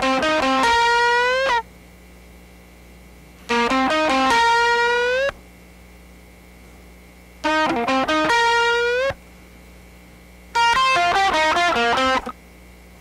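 Electric guitar in standard C tuning playing a short lead lick four times, with pauses between. Three phrases are quick runs of notes ending on a held string bend that rises in pitch; the last is a descending run of notes. A steady low hum fills the pauses.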